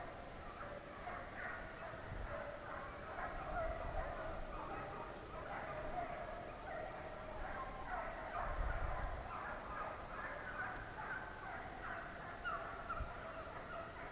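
A pack of deer hounds baying, many voices overlapping without a break. A couple of low rumbles on the microphone come through as well.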